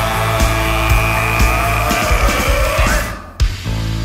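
Rock song instrumental: held guitar lines over drums. The band drops out for a moment about three seconds in and comes back in on a loud hit.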